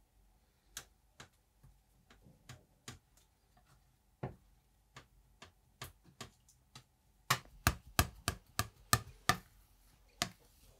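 Metal palette knife working black printing ink on a glass slab: scattered soft clicks as the blade presses and lifts the ink. About seven seconds in, a run of quicker, louder taps follows, about four a second, as the knife blade chops down onto the ink and glass.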